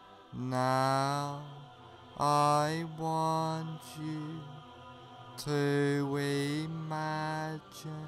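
Meditation music: a low voice chanting long held tones, about six in a row with short breaks between them.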